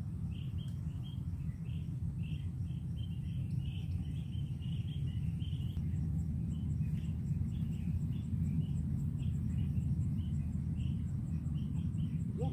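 Outdoor ambience: a steady low rumble under short, repeated chirps of small birds. From about halfway through, a faint, fast, even ticking of an insect joins in.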